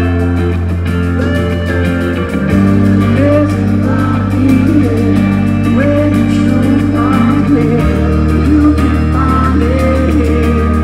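Live reggae band playing loudly, with a male lead vocal singing over electric guitar and a deep, sustained bass line that shifts note about two and a half seconds in and again near the end.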